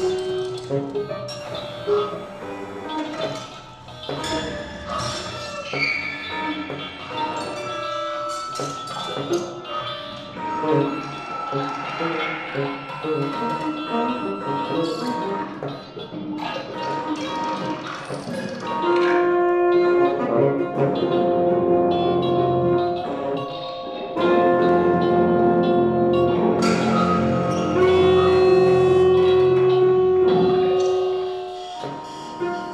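Contemporary chamber music for tenor saxophone, electric guitar, cello and electronics: scattered short notes and fragments at first, then from about two-thirds of the way in, long held tones that grow louder and last to the end.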